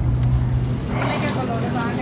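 Steady low hum of a car's idling engine heard from inside the cabin; about a second in it gives way to a fainter background with distant voices.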